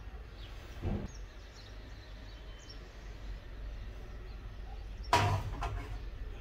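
Tableware set down on a metal serving tray: a dull knock about a second in, then a sharp, louder clack a little after five seconds as a ceramic coffee cup is put down on the tray, over a faint steady room hum.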